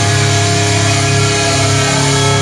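Live heavy metal band playing: distorted electric guitars and bass hold a steady, sustained chord.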